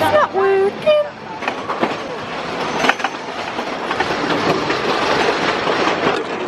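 Roller coaster train rolling and clattering along its track, the rumble growing steadily louder from about a second and a half in as it picks up speed.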